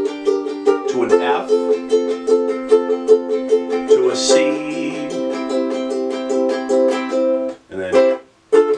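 Acoustic ukulele strummed in a steady fast down-up rhythm, about four or five strums a second, playing the chorus chord progression (B-flat, G minor, F, C). The chord changes about a second in and again about four seconds in, and the strumming stops shortly before the end.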